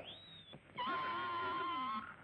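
Cartoon pig squealing as it is squeezed like a bagpipe: a short high gliding squeal at the start, then from just under a second in a long squeal held on one pitch.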